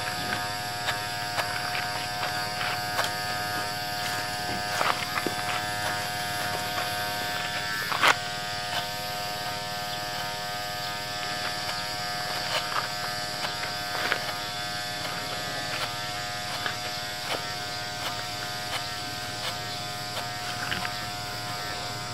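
Electric hair clippers buzzing steadily as they cut a boy's hair, with occasional faint clicks.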